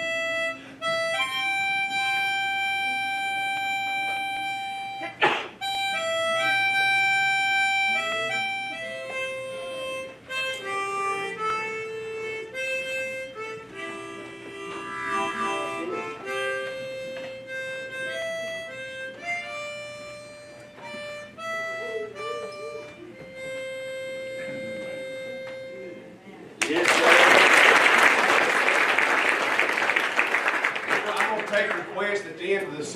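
Solo harmonica playing a melody of held single notes and chords. It stops about 26 seconds in, and the congregation applauds loudly.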